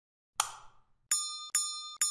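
A short click-like burst, then a run of bright, bell-like electronic dings about two a second, each sharp at the start and ringing away: sound effects accompanying the simulation as it steps clock by clock.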